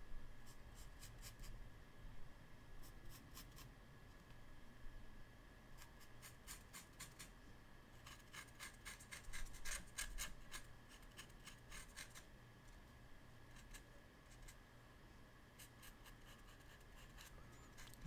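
Faint scratchy strokes of a small paintbrush on paper, coming in short clusters with pauses between them, over a faint steady tone in a quiet room.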